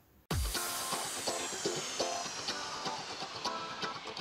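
Channel intro music that starts suddenly about a third of a second in with a deep hit, followed by a long high whoosh that falls slowly in pitch over a run of short pitched notes.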